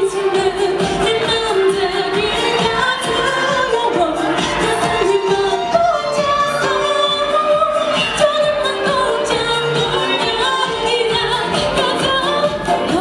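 A K-pop song playing loud, with sung vocals over a steady dance beat.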